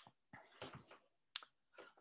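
Near silence: room tone, with a few faint brief noises and one short sharp click a little over halfway through.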